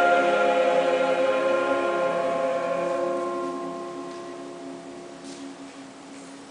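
A mixed choir of men's and women's voices holding the final chord of the piece, with some notes changing about halfway through. The singing fades steadily away.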